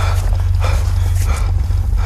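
A man panting hard, quick rough breaths about every two-thirds of a second, over a steady low rumble.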